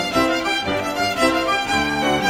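Fiddle playing a lively English country dance tune over low held accompaniment notes that change every half second or so.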